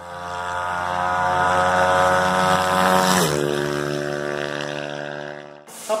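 Logo intro sound effect: a steady, machine-like drone that swells in, drops to a lower pitch a little past halfway, and cuts off abruptly shortly before the end.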